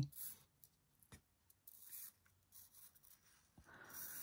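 Near silence, with a few faint, brief scratching and rubbing sounds and one soft click about a second in, from a thin strip of craft tape or card being handled against a cutting mat.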